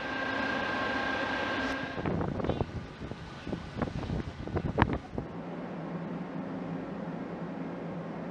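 Shipboard and sea sounds: a steady machinery drone with a high steady whine for about two seconds, then uneven wind noise with a few knocks, then a steady low engine drone from about five seconds in.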